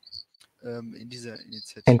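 Speech: a quieter man's voice talking, then a louder voice beginning near the end. A brief faint high-pitched chirp sounds right at the start.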